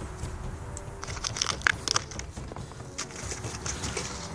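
Small irregular crackles and crunches as fingers pick grit and bits of pine cone out of the tread of a rubber-coated boot sole.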